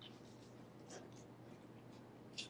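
Near silence: room tone with a few faint, soft paper rustles about a second in from the pages of an open Bible being handled.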